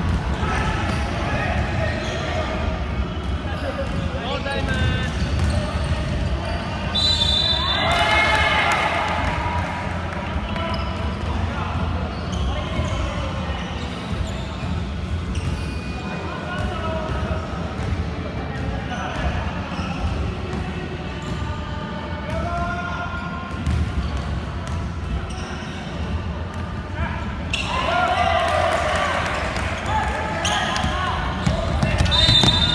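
Basketball being dribbled on a hardwood gym floor during play, with players' voices calling out, loudest about eight seconds in and again near the end, echoing in a large hall.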